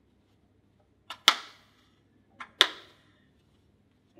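Two sharp clacks about a second and a half apart, each led by a faint click, from the stand aid's castor brakes being pressed on.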